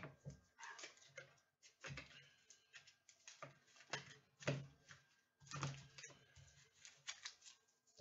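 Faint handling of plastic-sleeved trading cards being gathered into a stack by hand: a run of short, irregular clicks and rustles.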